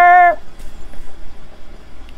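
A woman's voice holding one steady, drawn-out note that cuts off about a third of a second in, followed by a pause with only faint background hiss.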